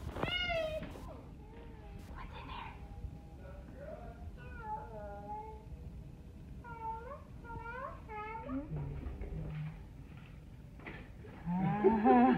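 A series of short, high-pitched mewing cries, each rising and falling in pitch, coming singly and in quick runs of three or four.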